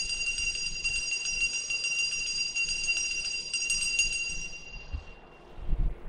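Altar bells rung in a continuous shimmering jingle at the elevation of the chalice during the consecration, fading out about five seconds in. A short dull thump near the end.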